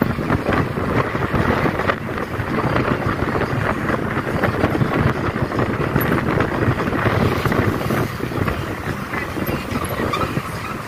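Steady rushing and rumbling noise of wind buffeting the microphone as the camera moves along the road.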